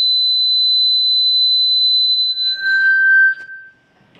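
Public-address microphone feedback: a loud, steady high-pitched squeal that jumps to a lower squealing tone about two and a half seconds in, then cuts off suddenly.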